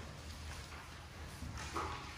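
Quiet classroom room tone with a steady low hum, and a brief faint sound a little before the end.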